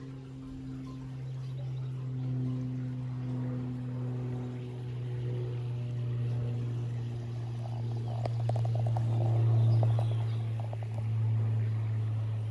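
A steady low hum, with faint held tones above it that shift in pitch every second or two, and a few faint ticks near the end.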